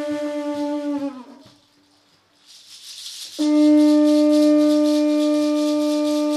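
An Andean wind instrument holds one low, steady note that sags in pitch and dies away about a second in. After a brief near-silence a shaken rattle starts, and the held note comes back loud over it about three and a half seconds in.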